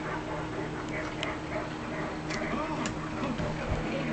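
Faint voices in the background over a steady low hum, with a few light clicks about a second in and again near three seconds.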